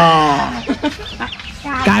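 A man's long, drawn-out shout in the first half second, a reaction to the burn of hot chili, followed near the end by the spoken word "cay" (spicy).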